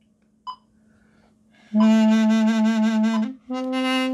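Mey, the Turkish double-reed wooden pipe, playing two long held notes: the first begins a little under two seconds in, and the second follows after a brief break near the end. A short click is heard about half a second in.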